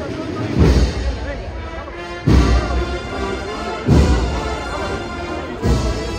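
Procession band playing a slow march: sustained brass chords with four heavy bass-drum beats, roughly one every 1.7 seconds.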